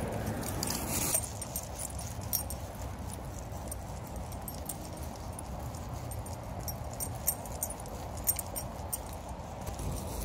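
A dog moving about on frosty grass: rustling and light crunching, with scattered sharp clicks and jingles, over a low steady rumble. The rustle is louder for about the first second.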